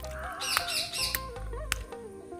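Background music with a steady beat and melody, with birds over it: a harsh call right at the start and a quick run of high chirps about half a second in.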